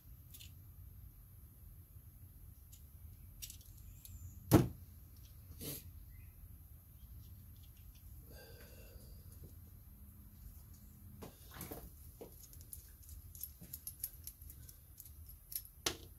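Small metal clicks and taps from pliers and a motorcycle rear brake master cylinder being handled as it is taken apart, with one sharp knock about four and a half seconds in and a run of quick light clicks near the end.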